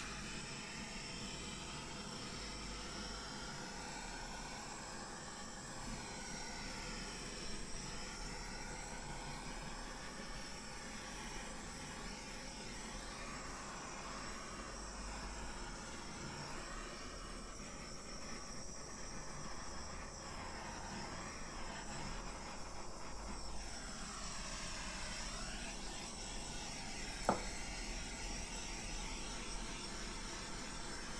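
Handheld butane torch flame hissing steadily as it is swept over wet acrylic pour paint to raise silicone cells, its tone wavering as the nozzle moves. A single sharp click near the end.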